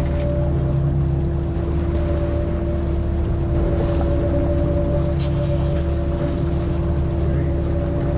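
Fishing boat's engine running steadily with a constant hum and low rumble while the boat is trolling, with faint water noise and a couple of small clicks from the gear.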